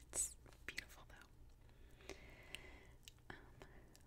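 A very quiet pause: a soft, whispery breath about a quarter second in, then a few small, faint clicks and a faint thin tone.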